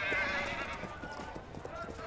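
A horse whinnying with a quavering call that fades out over about the first second, followed by faint hoof steps.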